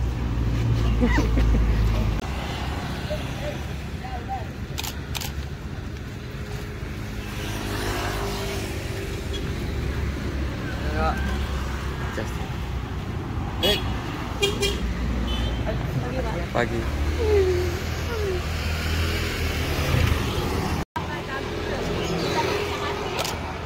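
Road traffic of motor scooters and cars passing close by, with a low rumble that swells in the first two seconds and again about seventeen seconds in, under scattered young voices chatting.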